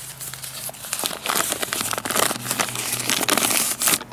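A crumpled sheet of paper being unfolded by hand, crinkling and crackling, louder from about a second in.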